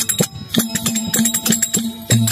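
Folk devotional aarti music with a steady rhythm of rattling percussion clicks. The singing and low drone drop out briefly, with a short dip in level just under half a second in, while the percussion keeps going.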